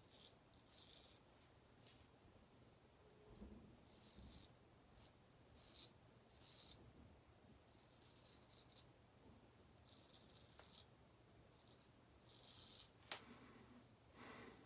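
Hejestrand MK No 4 straight razor scraping through lathered stubble: about ten faint, short scratchy strokes at an uneven pace, with a sharp click near the end.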